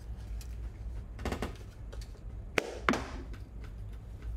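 A few short knocks and clicks of a carving knife and a diamond sharpening plate being handled on the bench, with two sharper clicks close together about three seconds in.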